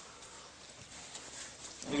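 A man drinking from a plastic cup close to a microphone: faint swallowing and a few soft clicks, then his voice starts right at the end.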